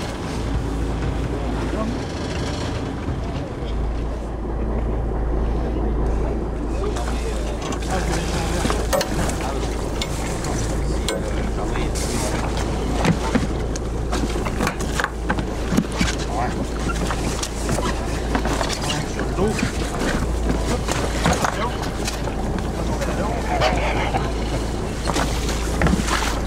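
Steady low rumble aboard a boat at sea, with wind on the microphone. From about eight seconds in come scattered knocks and indistinct voices as the boats come together alongside.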